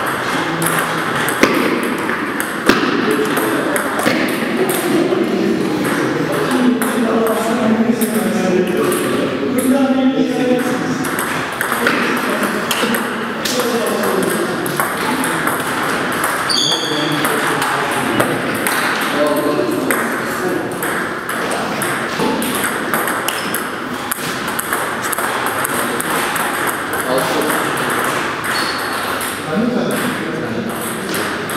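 Table tennis balls ticking off bats and tables again and again, from the rally on the near table and from play at other tables in the hall, with voices talking in the background.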